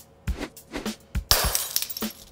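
Background music with a steady beat; about a second and a quarter in, a loud, sudden crash sound effect with a shattering, clattering quality, lasting about half a second.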